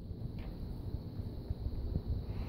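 Low rumbling handling noise on a phone's microphone as the phone is moved about, with a faint tick or two.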